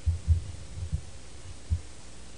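Several deep, dull thumps in quick uneven succession, then one more after a short gap, over a faint steady hum.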